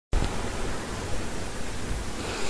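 Steady hiss of microphone background noise with a low hum underneath, cutting in abruptly as the recording begins.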